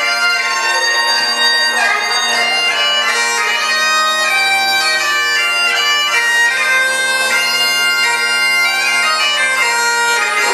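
Great Highland bagpipes playing a tune: a changing chanter melody over steady drones, with a lower drone line joining about one and a half seconds in.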